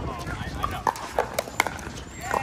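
Pickleball paddles hitting the plastic ball in a fast exchange: a quick series of sharp, hollow pops, several within about a second near the middle, over background voices.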